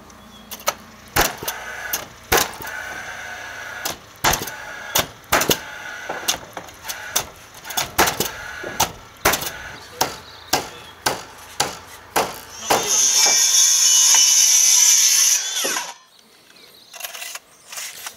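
Nails being driven into timber joists: a run of sharp knocks, at times several a second. About thirteen seconds in, a burst of loud steady noise lasts about three seconds and stops suddenly.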